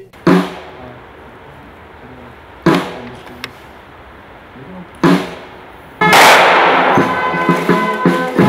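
Three volleys of a rifle salute from an honour guard's Kalashnikov-type rifles, about two and a half seconds apart, each shot ringing out through the trees. About six seconds in, loud brass music starts.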